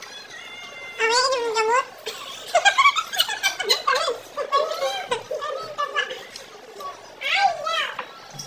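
People talking and laughing, with a high, wavering voice about a second in.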